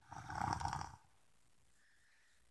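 A person's loud breath or sigh close to the microphone, lasting about a second, ending about a second in.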